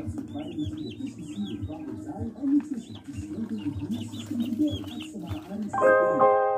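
Chickens clucking, many short low calls overlapping one another, with high repeated chirps above them. Piano music comes in near the end.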